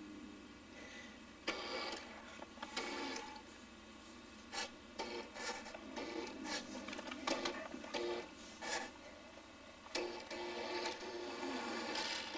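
Tyco remote-controlled toy truck's small electric motor and gears whirring in a dozen or so short spurts as it is driven across the carpet.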